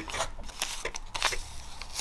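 Clear plastic packets of stickers crinkling as they are handled, in a few scattered crackles.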